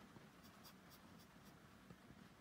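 Near silence, with faint soft scratches and rustles from a plush toy being handled close to the microphone.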